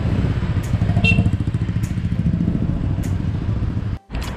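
Motorbike engine running steadily under way, heard from the pillion seat amid street traffic, with a brief high beep about a second in.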